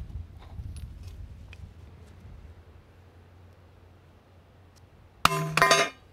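A brick dropped from chest height hits a polymer AK magazine lying on a steel plate, giving one sharp impact about five seconds in followed by a brief metallic ring from the plate. The blow punches a hole right through the magazine's body.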